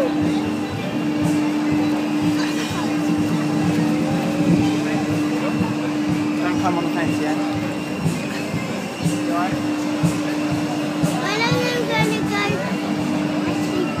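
Swinging pirate-ship fairground ride in motion: a steady droning machine tone runs under the voices and shouts of a crowd of riders, with a burst of shouting about eleven seconds in.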